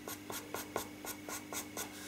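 Faber-Castell Pitt pastel pencil scratching on paper in short quick strokes, about four or five a second, putting in fine hairs.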